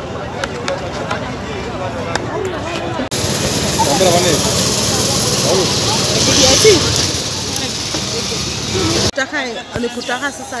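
Chatter of a busy open-air market. From about three seconds in, a loud steady hiss from maize roasting over a charcoal grill sits under the voices. The hiss cuts off abruptly about a second before the end.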